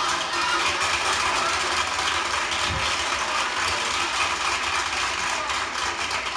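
Live audience laughing and applauding on a 1967 comedy record playing on a turntable, a dense steady patter that follows a punchline.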